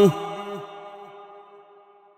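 A man's melodic Quran recitation (tilawat) closing a phrase on a held note about half a second in. Its long echo then fades away over the next second and a half.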